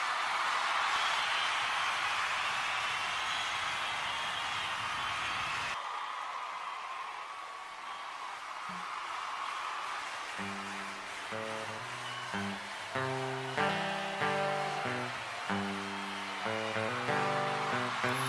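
A crowd's noise fills the first few seconds and cuts off abruptly. About ten seconds in, a guitar starts picking a melody, one note at a time, opening the last song of the set.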